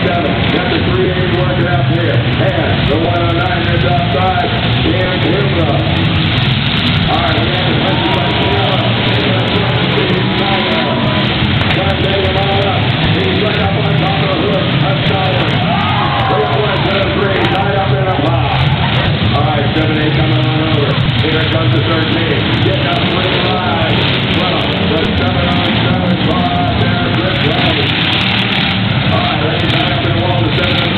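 Eight-cylinder demolition derby car engines running with a steady low rumble, under a continuous wash of people's voices from the crowd and announcer.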